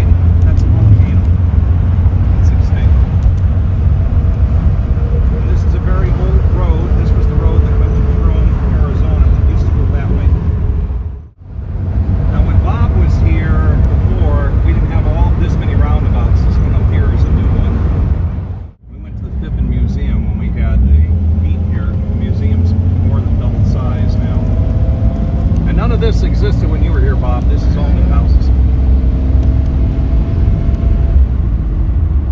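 Steady low engine and road rumble heard from inside the cabin of a 1939 supercharged Graham four-door sedan cruising, with indistinct talk over it. The sound drops out briefly twice, about a third and two-thirds of the way through.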